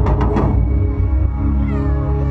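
Recorded dance music played over a PA: a fast run of drum hits in the first half second, then sustained held notes with a sliding high melodic line near the end.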